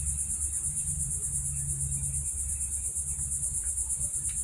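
Insects trilling steadily, a high-pitched, rapidly pulsing chorus like crickets, over a low hum.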